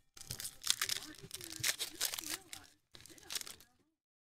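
Foil wrapper of a trading-card pack crinkling and tearing, with cards rustling as they are handled: a quick run of crackles and rips over the first three seconds, then the sound cuts off abruptly.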